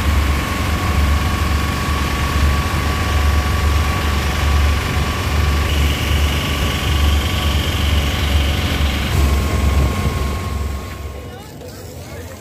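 Engine and road noise of a moving passenger vehicle heard from inside its cabin: a heavy, pulsing low rumble with a steady whine over it. It stops abruptly near the end.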